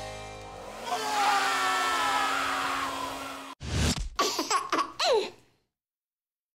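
Hand-held hair dryer running for about two and a half seconds, a steady hum over rushing air, then cut off abruptly. It is followed by a short burst of jingle music.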